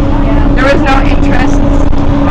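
Bus running on the road, heard from inside the cabin: a loud low rumble with a steady hum.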